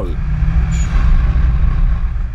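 A car driving along a road: a loud, steady low rumble of engine, tyre and wind noise from the moving vehicle.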